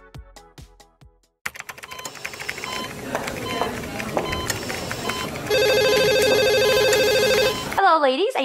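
Electronic music with a steady beat fades out in the first second. After a busy stretch of background noise with clicks, a loud trilling telephone ring sounds for about two seconds near the end.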